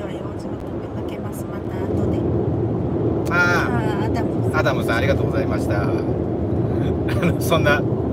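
Steady road and engine noise inside a moving car's cabin, a little louder about two seconds in, with people talking over it from about three seconds in.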